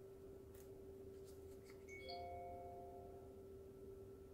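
Near-silent room tone with a steady low electrical hum. About two seconds in, a single short chime-like ring sounds and fades within about a second.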